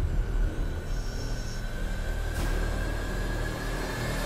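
Ominous, suspenseful TV score music: a deep, steady low rumble with a long held high note above it.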